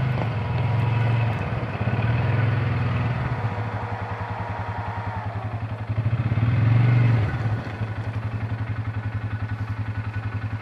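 A motor vehicle engine idling with a steady pulsing beat. It speeds up briefly three times: in the first second, around two to three seconds in, and again about six to seven seconds in.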